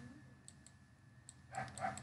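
Faint scattered clicks and taps of a stylus writing on a pen tablet, with a brief soft murmur of a voice near the end.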